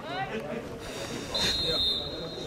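Referee's whistle: one shrill, slightly trilling blast starting past halfway and carrying on past the end, signalling the kick-off restart at the centre circle.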